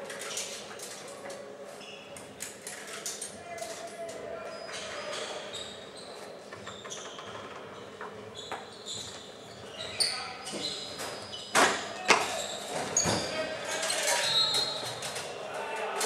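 Basketballs being handled, with knocks and bounces on a hard floor in a large, echoing hall, and a few louder thumps about ten to twelve seconds in. Voices murmur in the background.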